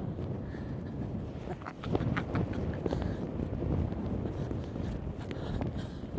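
Wind buffeting the microphone in a low, steady rumble that grows louder about two seconds in, with a few faint clicks around then.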